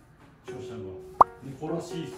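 A quick cartoon-style "plop" sound effect, a short pop that slides sharply upward in pitch, about halfway through, over light background music.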